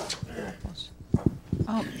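Quiet lecture-hall room tone with a few faint low knocks and faint murmuring.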